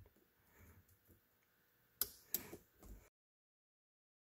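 Faint metal handling noise, then two sharp clicks about two seconds in, a third of a second apart: snap ring pliers working a circlip on a steel ATV transmission shaft. The sound then cuts off completely.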